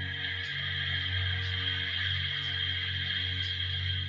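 A long, slow exhale through the nose, a soft breathy hiss, taken as part of a guided breathing exercise. Under it runs soft ambient synth music with a steady low drone.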